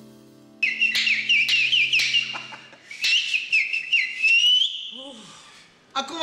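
Whistling: a quick run of short, chirping high notes, about two a second, ending in a longer rising note, then fading out.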